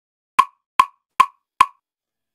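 A four-beat count-in: four short, sharp clicks evenly spaced about 0.4 s apart, around 150 beats a minute, setting the tempo for the track.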